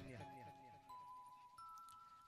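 Faint held notes on a keyboard instrument: three steady tones come in one after another, each higher than the last, as the echo of the voice dies away.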